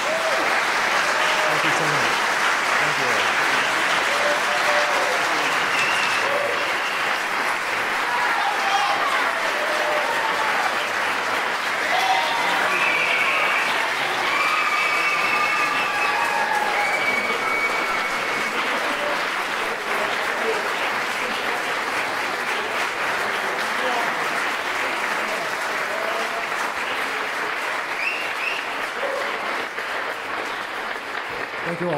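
A large audience applauding as a song ends, the clapping starting abruptly and holding steady, with scattered cheers and whoops over it.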